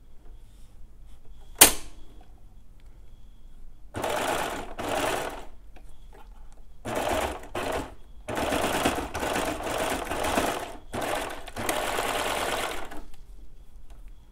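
Baby Lock serger stitching through four layers of stretch swimsuit fabric in several stop-start runs with short pauses, beginning about four seconds in. A single sharp click, the loudest sound, comes about two seconds in.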